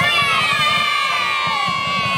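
A group of young girl cheerleaders shouting a long, high-pitched cheer together, several voices held on one drawn-out yell.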